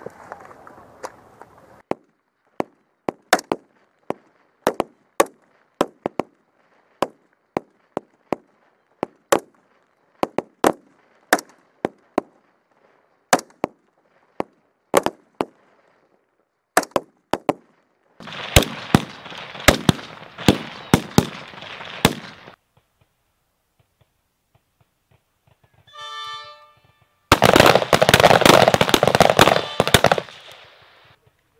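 M16 service rifles firing on a range: many sharp single shots at irregular intervals from several shooters. Later comes a stretch of steady noise with more shots, a brief pitched tone, and a loud, dense burst of noise near the end.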